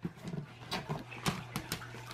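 Wrapping paper on a large gift box rustling and tearing in short, irregular little pulls as a small child picks at it, with light taps of a hand on the box.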